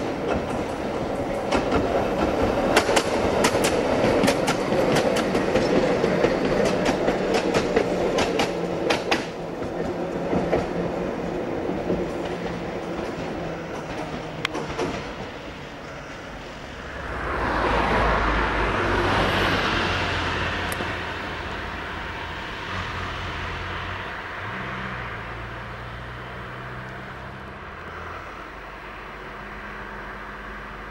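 RVZ-6 two-car tram train running past and away, its wheels clicking rapidly over the rail joints for the first fifteen seconds, then fading to a quieter rumble. About seventeen seconds in, a van passes close by in a rising and falling whoosh.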